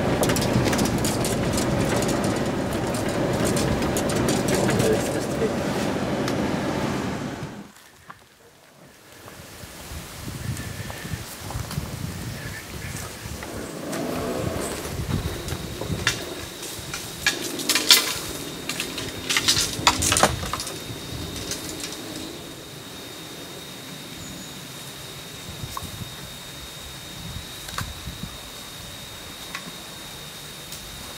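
A small 4x4 driving over a rough forest track, heard from inside the cabin. After an abrupt change it gives way to the knocks and clicks of fishing gear being handled at the vehicle's open tailgate, over a thin steady high tone.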